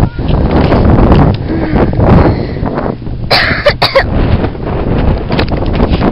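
Wind rumbling on a handheld camera's microphone, with a short harsh cough-like vocal burst about three and a half seconds in.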